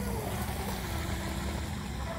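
Faint whine of a 12-inch, 1/8-scale Tiny Titan RC hydroplane's 2030 7200 kV Hobbywing brushless motor running laps across the water: a thin tone that sags slightly in pitch, over a steady low rumble.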